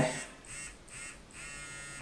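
Handheld vanav Time Machine facial beauty device buzzing faintly as it runs against the skin, the buzz clearer in the second half.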